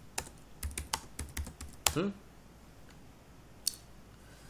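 Typing on a computer keyboard: a quick run of keystrokes over the first two seconds, then a single keystroke near the end.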